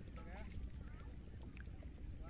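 Low steady wind rumble on the microphone. Over it come a few quick series of short rising chirps.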